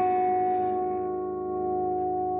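Electric guitar chord on a custom American Fender Telecaster through a Blackstar tube amplifier, left ringing after it was struck and slowly fading.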